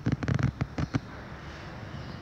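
A quick run of sharp crackling knocks, about eight in the first second, then a low steady background.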